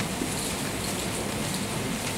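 Steady, even hiss of background noise, with no clear events in it.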